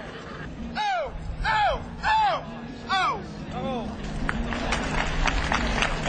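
A man's loud, high-pitched calls: five short shouts that each rise and fall, in about three seconds, commands to a working draft horse. From about four seconds in, crowd applause.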